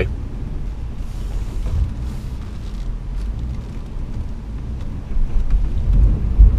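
Low, steady rumble of the 2016 Honda Pilot's 3.5-litre V6 and drivetrain as the SUV crawls at about 2 mph over a rough dirt trail. It grows louder about five seconds in as the vehicle works harder on the uneven ground.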